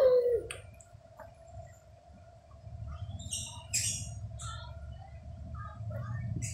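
A baby's short vocal sound right at the start, about a second long, rising and then falling in pitch. Scattered faint clicks and crackles follow from the middle onward, over a low rumble and a thin steady hum.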